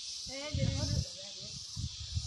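A voice says a single short word early on, over a steady high-pitched hiss and a low rumble.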